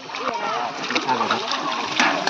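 Water splashing and dripping in a large basin as stainless steel plates are dipped and rinsed, with voices chatting over it.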